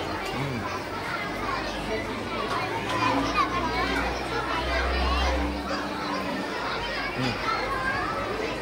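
Many children's voices chattering and calling out at once, a continuous hubbub of kids' talk.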